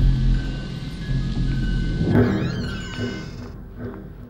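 Horror film score: a sustained low drone with thin high held tones. About two seconds in, a shrill, wavering screech rises over it for a second or so, then the music fades away.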